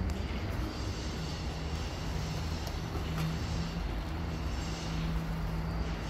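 A motor running: a steady low rumble with a low hum that comes and goes.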